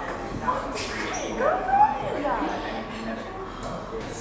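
Several voices chattering, with a few short, high, gliding wordless vocal sounds, the loudest about a second and a half to two seconds in.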